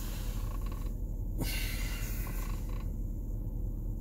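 Steady low rumble heard inside a car cabin, with two stretches of soft hiss, the louder one about a second and a half in.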